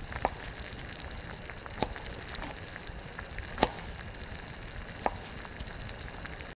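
A steady sizzle-like hiss with four sharp knocks of a kitchen knife on a wooden cutting board, spread one to two seconds apart.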